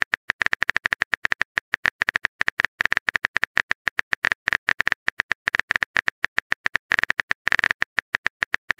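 Typing sound effect of a phone keyboard, a quick, uneven stream of short clicks all at the same sharp pitch, several a second, as a text message is typed out, bunching into a faster flurry near the end.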